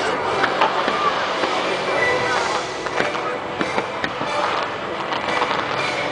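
Aerial fireworks bursting over water, with several sharp reports scattered through a dense, rumbling wash of explosions. Crowd voices are mixed in.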